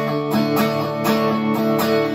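Electric guitar strummed in steady, sustained chords, about four strums a second.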